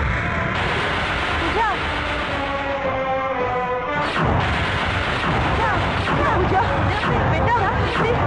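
Film soundtrack music blended with several overlapping voices, with deep booming hits near the start and again about four seconds in.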